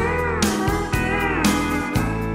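Instrumental break in a country song: a steel guitar plays a lead line with sliding, bending notes over bass and a steady drum beat of about two hits a second.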